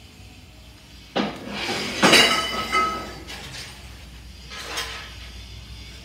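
Hard objects clinking and clattering, with a brief ringing note: a sudden knock about a second in, the loudest clatter about two seconds in, and a fainter clink near the end.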